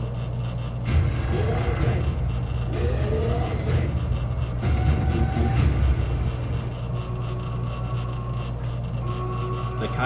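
Movie trailer soundtrack playing back: a deep low rumble that swells about a second in, with gliding pitched sound effects and snatches of voice over it.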